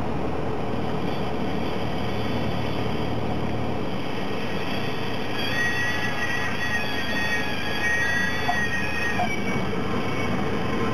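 Cessna 172SP's four-cylinder engine and propeller running steadily, heard inside the cockpit as the plane rolls along the runway. About halfway through, a high, wavering whine joins in for a few seconds.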